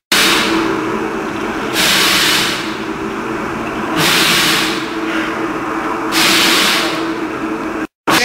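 Pneumatic bottle-filling machine running with a steady hum, broken by a short hiss about every two seconds.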